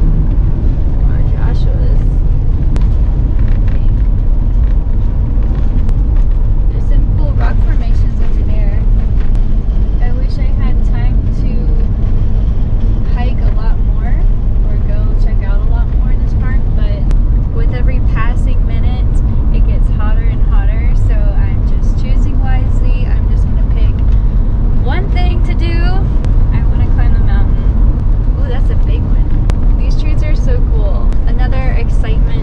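Ford Transit van driving on an open road, heard from inside the cab: a steady, loud low rumble of road, engine and wind noise, with air rushing in through an open side window.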